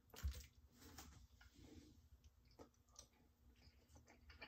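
Near silence broken by a soft knock about a quarter second in and a few faint clicks: a fork scooping pasta off a plate, then quiet chewing.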